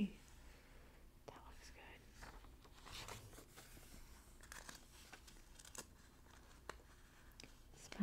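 A glossy magazine page turned by hand, with a soft swish about three seconds in, then quiet rustling and light clicks of fingers on the paper as the page is smoothed flat.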